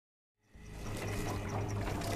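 A low steady hum under a hiss, fading in from silence about half a second in.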